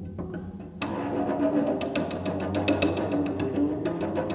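Solo cello with clips fitted to its strings, playing fast repeated thirty-second-note figures with sharp accents that sound percussive and clicky. It is quieter at first and then much louder and denser from about a second in.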